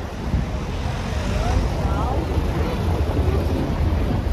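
Busy street ambience: a steady low rumble with passersby talking over it.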